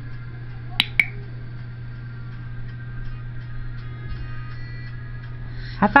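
Pet-training clicker pressed and released: two sharp clicks a fifth of a second apart, about a second in. It is the marker signal of clicker training, telling the cat she has done the trick right.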